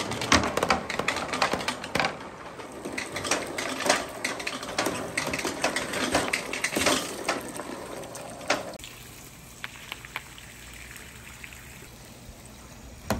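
Orange plastic Dragon Ball marbles clattering and rattling as they roll down a perforated board, with water splashing as they run through a shallow layer of water. The clatter stops sharply about three-quarters of the way through, leaving only a few faint clicks.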